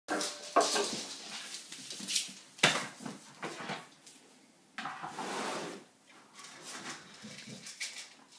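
A small dog giving a few short, sharp barks, the loudest about half a second and two and a half seconds in, with a longer rustling sound about five seconds in.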